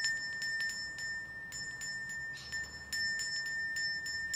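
Metal hand bell rung over and over by shaking, its clapper striking many times so that a high ringing tone is held throughout. It is rung as a feeding signal for magpies.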